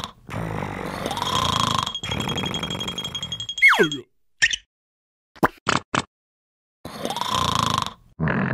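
Cartoon sound effects over soft music. A fast falling whistle-like glide comes about three and a half seconds in, followed by a few short pops separated by silence.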